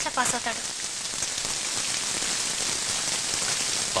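Heavy rain falling steadily and pouring off a roof edge, an even continuous hiss.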